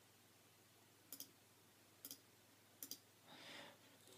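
Three faint clicks of a computer mouse about a second apart, each a quick double click, over near silence, with a soft breath near the end.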